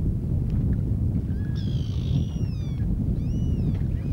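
Gulls calling, several drawn-out calls that fall in pitch at their ends, from about a second in until near the end, over steady wind noise on the microphone.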